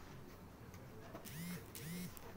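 Two short squeaks, each rising then falling in pitch, about half a second apart in the second half.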